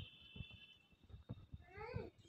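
Infant rhesus macaque giving a short, rising, mew-like call near the end, faint. A thin high steady tone fades out about a second in, over soft low knocks.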